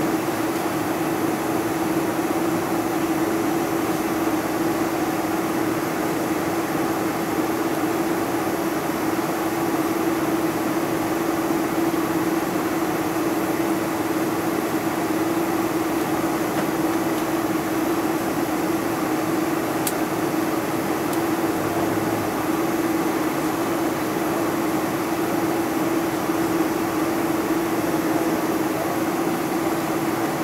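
Steady cabin drone of a Boeing 747-400 on the ground, its GE CF6 turbofans at low taxi thrust, with a constant hum and no spool-up. A single faint tick comes about two-thirds of the way through.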